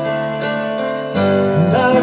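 Live rock band playing a slow song, with guitars and drums. The chord changes and the music gets louder about a second in.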